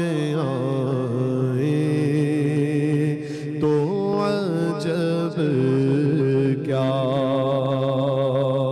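A man's solo voice singing a naat, an Islamic devotional song, drawing out long held notes with wavering, ornamented pitch that slides up and down between them.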